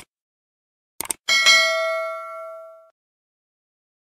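Subscribe-button animation sound effect: two quick mouse clicks about a second in, then a single bell ding that rings out and fades over about a second and a half.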